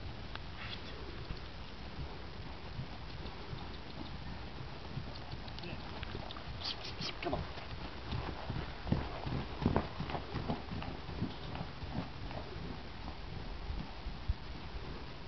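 A horse trotting on soft dirt: irregular hoofbeats that are loudest in a cluster of knocks as it passes close, about nine to ten seconds in, over a low steady rumble.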